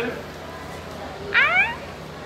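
Blue-and-yellow macaw giving one short, loud call that rises in pitch, about a second and a half in.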